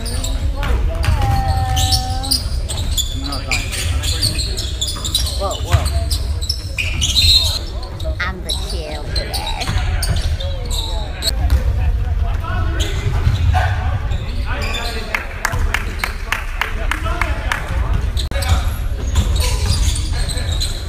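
Basketball game on an indoor hardwood court: the ball bouncing repeatedly, with players' voices in the echoing gym. The bounces come thickest near the end.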